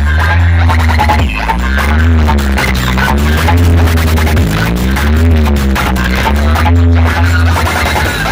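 Very loud electronic dance music from a large outdoor DJ speaker-box stack with horn speakers: a heavy, steady bass under a synth tone that slides up and down over and over, about every second and a half.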